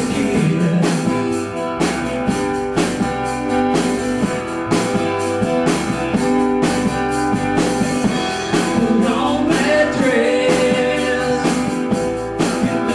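A small band playing live in a room: strummed acoustic guitars and an electric guitar over a drum kit keeping a steady beat.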